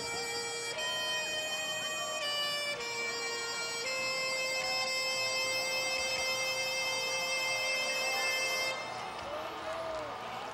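High school marching band's wind section playing a slow line of sustained notes, ending on one long held note of about five seconds that cuts off sharply about a second before the end.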